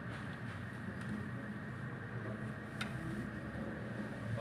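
Steady indoor background hum with a few faint ticks, one sharper a little before the end.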